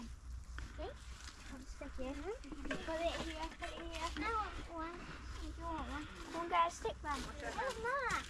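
Soft, indistinct children's voices chattering as they play, the words too faint to make out.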